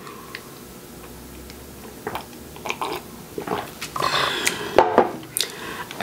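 A person drinking from a mug: quiet sipping and swallowing with small mouth clicks, busier about four to five seconds in.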